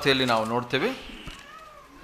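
A man speaking for about the first second, then a faint rising-and-falling tone.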